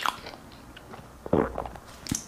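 Close-miked chewing mouth sounds: a sharp click at the start, faint small clicks, and a louder, deeper mouth noise about a second and a half in.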